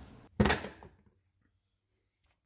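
A single short plastic clunk about half a second in: the Audi 1.8 TFSI's plastic engine cover being pulled off its mounts.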